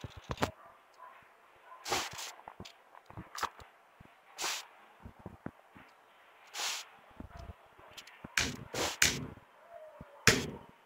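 Kitchen handling sounds: scattered sharp knocks and clicks of a plastic colander and spoon against a metal pot, with a few short rushing bursts as cooked corn kernels are tipped from the colander into the pot.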